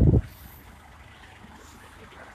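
The end of a spoken word, then faint, steady street noise from nearby car traffic.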